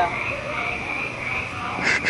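A steady chorus of frogs calling in the background, with a short laugh at the very start.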